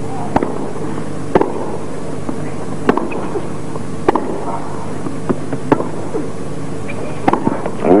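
Tennis rally on a hard court: sharp racket strikes and ball bounces about every second or so, over a steady low hum. Near the end a quick pair of hits comes as the point closes at the net with a volley.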